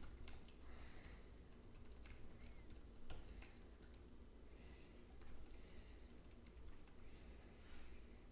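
Faint typing on a computer keyboard: a quick, uneven run of keystrokes as a sentence is typed out.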